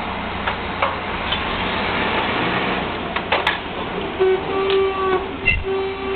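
Drilling rig floor machinery running steadily, with sharp metal clanks from pipe handling at the rotary table. From about four seconds in, a mechanical whine comes in and out.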